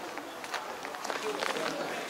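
Footsteps walking on a paved surface, heard as short irregular clicks, over a background of indistinct voices of people outdoors.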